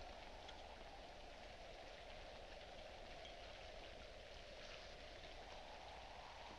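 Near silence: the steady hiss of an old film soundtrack.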